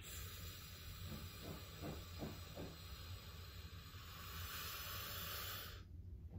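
A person's long, slow inhale, a faint steady hiss of air lasting about six seconds and stopping sharply near the end. It is a demonstration of a diaphragmatic breath, with the chest lifting only at the last part of the inhale.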